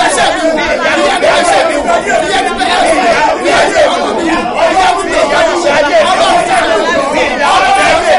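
A man and a woman praying aloud at the same time, their voices loud, continuous and overlapping, with room echo.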